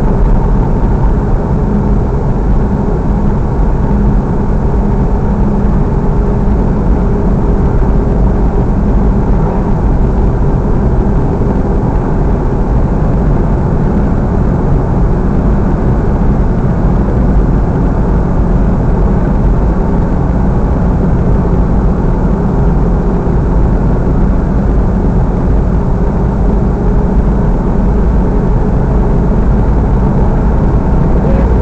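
Steady engine drone and road noise heard from inside the cabin of a vehicle cruising at an even speed, loud and unchanging throughout.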